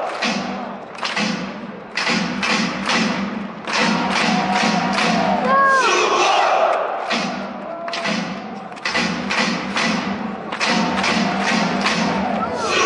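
A football supporters' section chanting in unison to a steady, repeated drum beat, the chant coming in phrases with short breaks. A brief high call is heard about halfway.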